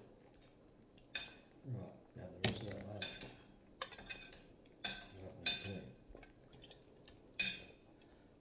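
A metal spoon clinking against a soup bowl while soup is eaten, with sips from the bowl: about seven short separate sounds spread through a few seconds.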